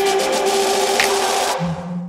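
Background electronic music with a quick steady beat and held notes; about a second and a half in, the beat and high end drop away, leaving a low held note as the track fades.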